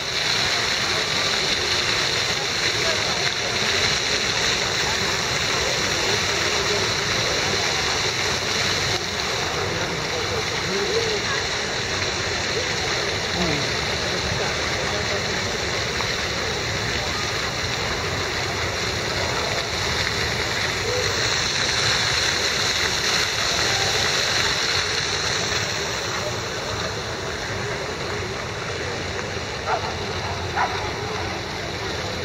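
Fountain water splashing, a steady hiss of falling water that eases a little near the end, with faint voices of passers-by underneath.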